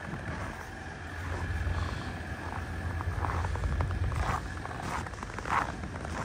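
Footsteps crunching on packed snow, about one step a second in the second half, over a steady low rumble.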